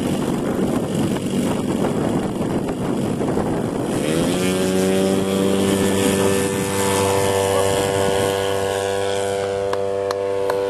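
Engine of a one-third-scale radio-controlled Fokker Dr.I triplane model at full throttle on its take-off run and climb-out. The first four seconds are a noisy rush; then the engine note rises and holds as a steady drone.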